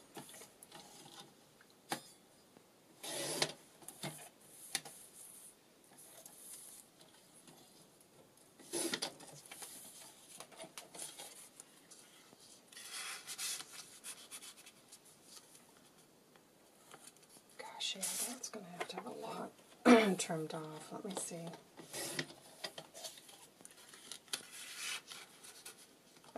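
Paper and card being cut and handled on a sliding paper trimmer: a few short scraping and rubbing strokes spread out with quiet gaps between, and card rustling as it is slid into a paper pocket.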